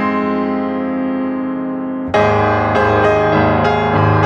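Background piano music: a held chord slowly fades, then a new, louder chord is struck about halfway through and more notes follow.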